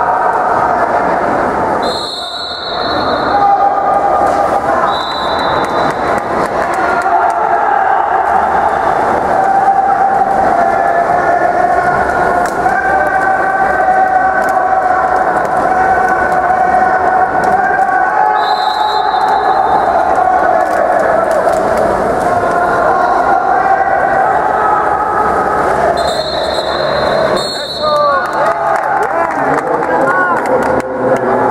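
Spectators shouting and cheering without a break, with a referee's whistle sounding short, high blasts several times: early on, twice in the first few seconds, once past the middle, and twice near the end.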